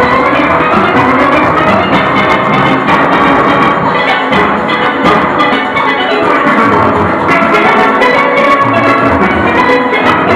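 A full steel orchestra playing live: many steelpans ringing together over drums and percussion, loud and steady throughout.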